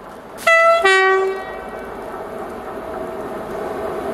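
Two-tone horn of an approaching Class 92 electric locomotive hauling a freight train, sounded about half a second in: a short high note, then a longer lower note. The steady rumble of the oncoming train then slowly grows louder.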